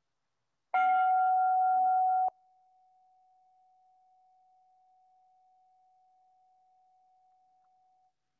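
A single chime struck about a second in, ringing one clear note to close the minute of silent prayer. After about a second and a half the ring drops suddenly to a faint tail of the same note, which fades out near the end.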